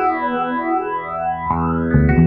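Rock band music with no vocals: a held chord swept by a swirling effect, its overtones sliding up and down, while the bass and drums drop back. The full band comes back in about one and a half seconds in.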